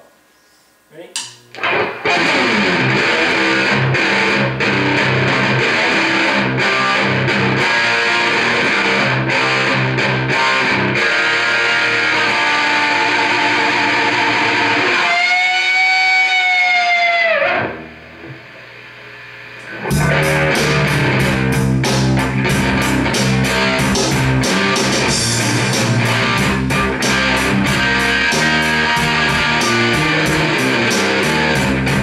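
Solid-body electric guitar played loud through an amplifier. About halfway through, a chord is held ringing with its pitch bending up and back, the playing drops quieter for a couple of seconds, then resumes with fast, evenly picked strokes.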